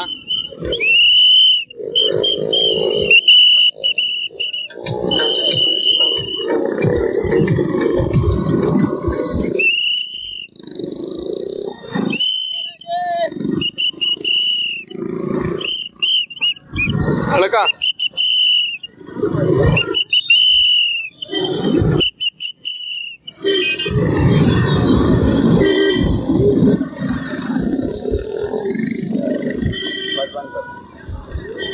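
A whistle blown in a dozen or so short, high blasts at irregular intervals, over loud heavy breathing and voices of running men.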